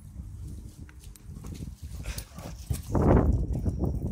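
Two dogs play-fighting in a shrub bed, with a loud, rough burst of growling about three seconds in as they meet.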